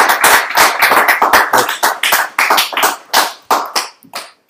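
Audience applauding, the dense clapping thinning out to a few separate claps and stopping near the end.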